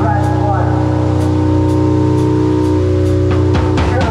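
Live doom/stoner band holding a heavy, sustained droning chord on distorted guitars and bass, with light cymbal strokes; near the end the drums come in harder as the music builds.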